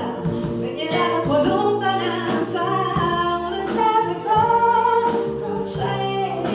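A woman singing a song live into a microphone with a small band accompanying her, holding a longer note about four seconds in.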